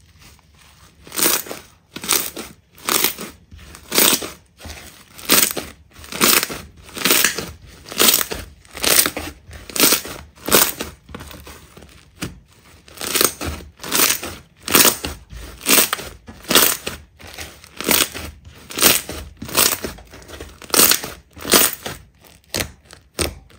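Pink slime being squeezed, stretched and pressed by hand, about one squeeze a second, each a short bright burst of sound, with a brief break about twelve seconds in.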